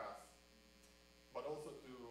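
Steady electrical mains hum under faint talk by a man, who speaks briefly at the start, pauses for about a second, then speaks again near the end.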